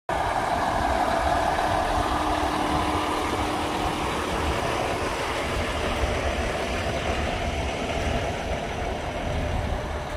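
Steady rumble of a running vehicle engine, with a brighter higher-pitched part that fades over the first few seconds.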